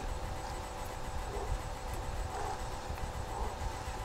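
Steady low room hum and hiss, with a few faint, soft sounds as a small machine-made cigar is drawn on at the lips.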